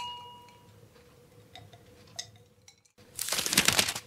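A glass clink ringing and fading away, followed by a couple of faint ticks. About three seconds in the sound cuts out for an instant, then there is a burst of noise lasting about a second.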